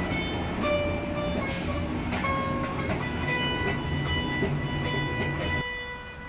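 Plucked-string background music over the steady low rumble of a moving escalator; the rumble cuts off suddenly shortly before the end.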